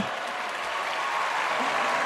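Studio audience applauding, an even clatter of clapping that grows a little louder toward the end.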